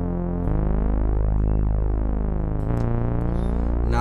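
Detuned sawtooth bass from the DRC software synthesizer with its sub oscillator, playing long held low notes that change twice, the filter cutoff turned down so the tone is dark and muffled.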